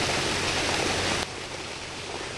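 Sewage water gushing out of a large pipe and splashing into a channel, a steady rushing noise. A little past halfway it drops to a quieter rush of water.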